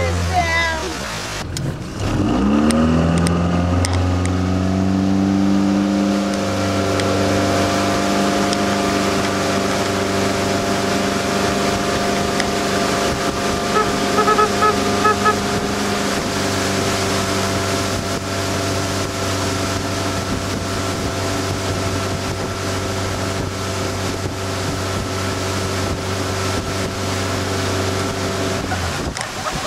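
A motorboat's engine towing a water skier, with water rushing along the hull. About two seconds in it picks up speed and rises in pitch, then runs at a steady pitch to the end.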